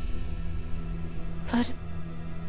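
A low, steady drone from the serial's dramatic background score, with one short spoken word near the end.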